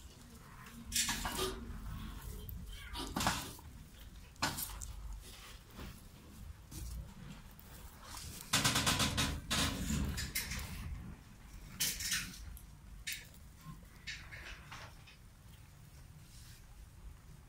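Handling noise around plastic rabbit nest boxes and a wire cage: scattered clicks, knocks and light rattles, with a longer rattling stretch about nine seconds in.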